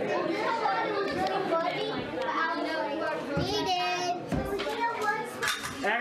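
Young children chattering and calling out as they play with toys, with a laugh near the start.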